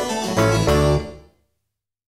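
Background keyboard music with piano-like notes, which fades out about a second in and leaves silence.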